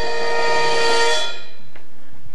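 A loud held chord of several steady tones, horn-like, that stops about a second and a half in, with a hiss swelling under its last half second.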